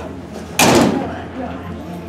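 A metal school locker door slammed shut once, about half a second in, with a sharp bang and a short metallic ring dying away.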